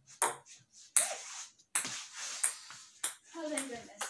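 A table tennis ball being hit back and forth on a wooden dining table: a string of sharp, light clicks from the ball striking paddles and the tabletop, about one every 0.7 s.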